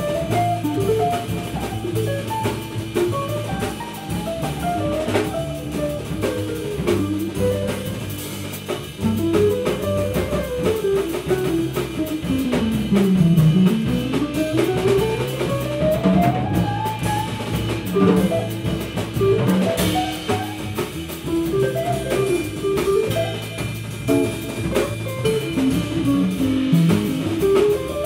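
Small jazz group playing live: guitar leading over double bass and drum kit. In the middle a long smooth slide in pitch falls low and climbs back up over several seconds.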